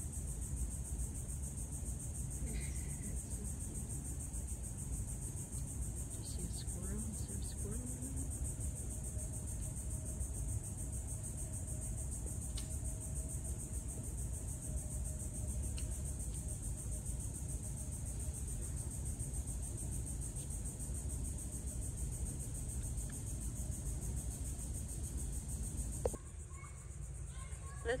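Steady, high-pitched drone of insects over a low outdoor rumble, with faint far-off voices now and then. The rumble drops away near the end while the insect drone goes on.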